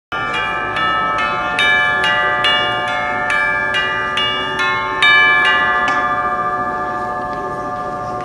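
Orchestral tubular bells (chimes) struck with a mallet, playing a peal of about a dozen notes of different pitches, roughly two a second. A last, louder strike about five seconds in is left to ring and slowly fade.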